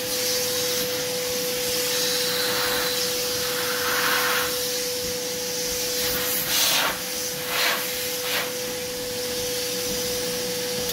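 Barber's hair-vacuum hose running with a steady hum and hiss as it sucks cut hair off the head. There are a few brief louder rushes in the second half.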